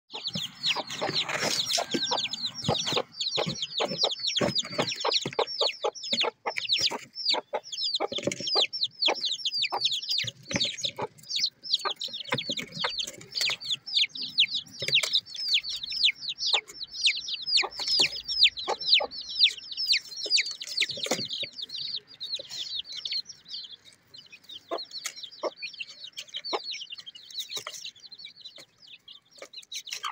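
Aseel chicks peeping continuously: rapid, high, downward-sliding peeps, several a second. The peeping thins out in the last third. Scattered low knocks come through beneath it.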